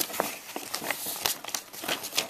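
Crinkling of Lego set packaging being handled: irregular sharp crackles and clicks.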